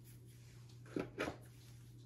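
Two short, soft knocks about a second in, from a capped plastic conical tube and lab plasticware being handled on the bench, over a low steady hum.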